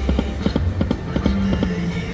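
Video slot machine sound effects as the reels spin and stop: a quick run of clicks, then a short tone a little past the middle, over a low hum.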